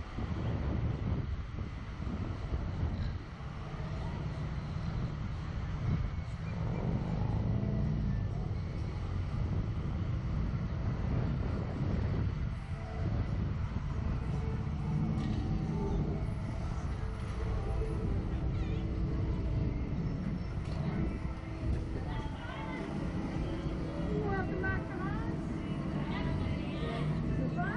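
Steady low rumble of wind buffeting the microphone of a camera mounted on a Slingshot ride capsule as it hangs and sways in the air, with faint voices near the end.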